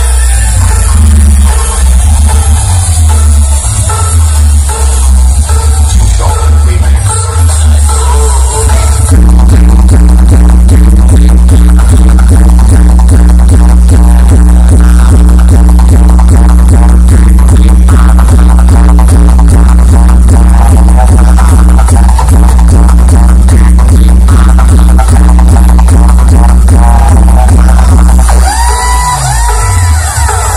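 Very loud DJ dance music played through a stacked loudspeaker 'box' sound system, dominated by heavy bass. About nine seconds in it switches to a fast, evenly repeating heavy bass beat that runs until near the end, when the track changes again.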